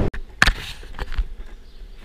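Longboard rolling on a concrete sidewalk, its wheels knocking over the pavement joints: one sharp knock about half a second in and two lighter ones a little after a second, over a faint rolling hiss.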